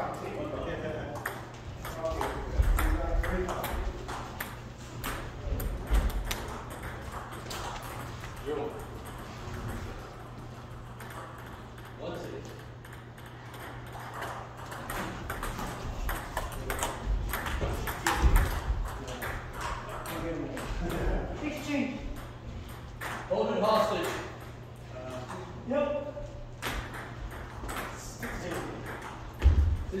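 Table tennis rally: the ball clicking off the paddles and bouncing on the table in quick, repeated sharp ticks.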